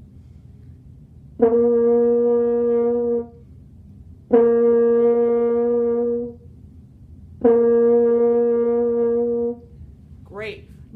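French horn playing the beginner's high note, written F with the first valve down, three times. Each is a steady held note of about two seconds at the same pitch, started cleanly with a 'DA' tongue attack.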